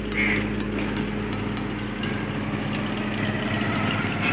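Steady mechanical hum like a small engine running, with a constant low drone; a short higher chirp about a quarter second in.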